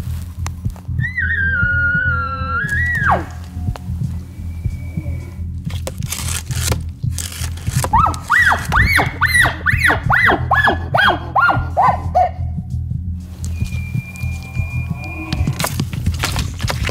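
Bull elk bugling: a high whistle held about two seconds that drops off, then a rapid series of about ten short squealing yelps stepping down in pitch, over a low steady hum.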